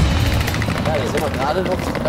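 People talking in German outdoors, with a steady low rumble underneath.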